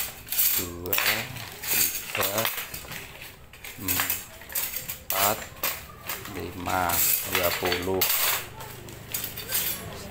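Steel knife blades clinking and clattering against one another, with repeated sharp clinks as the knives are picked up and set down one after another while being counted.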